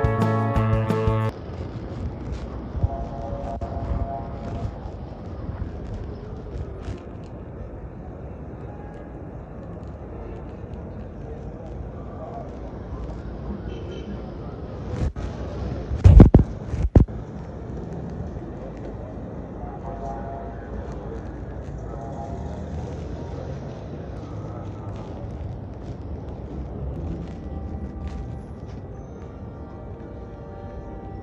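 Music for the first second or so, then the ambience of a busy city sidewalk: a steady hum of traffic and passers-by with snatches of distant voices. About halfway through comes a loud, low thump, with the sound cutting out briefly around it.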